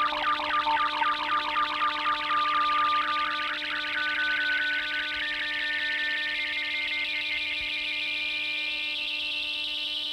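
Computer-generated blips from a sorting-algorithm animation running selection sort, each tone's pitch set by the height of the bar being compared. The blips go by in a rapid stream of fast, repeating sweeps over a few held tones. The lowest pitch of the sweeps climbs steadily as more bars are sorted.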